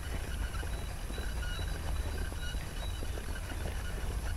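Outdoor ambience dominated by a low, uneven rumble of wind and handling on the camera microphone, with faint, brief high chirps, likely distant birdsong, in the background.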